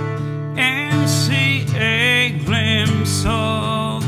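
A man singing over a strummed acoustic guitar, holding long notes that waver in pitch from about half a second in.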